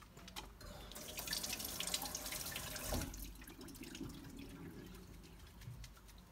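Tap water running over hands being washed in a stainless steel sink. It is loudest for about two seconds from about a second in, then drops away sharply.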